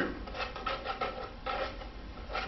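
A hand tool rubbing and scraping inside a plastic bottle as a piece of fabric is pushed flat against its bottom, in small irregular scrapes.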